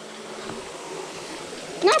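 Shallow creek water trickling over rocks, a steady hiss, until a voice cuts in near the end.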